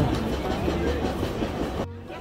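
Open-air market background: indistinct voices over a low, steady rumble, which cuts off abruptly near the end.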